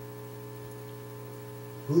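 Steady electrical mains hum, a set of even, unchanging tones; a man's voice comes in right at the end.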